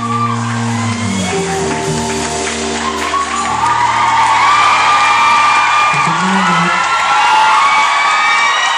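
Live band on stage holding sustained chords, with a crowd whooping and screaming over it that gets louder about three and a half seconds in.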